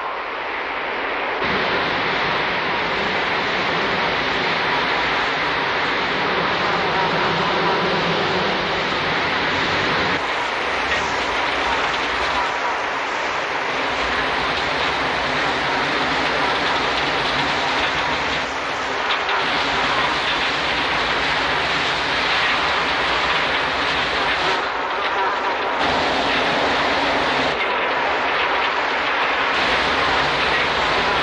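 A huge swarm of flies buzzing as one loud, steady, dense drone.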